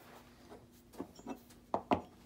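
Metal pistol parts handled on a wooden workbench: light rubbing and a few small clicks and knocks, the loudest two close together near the end.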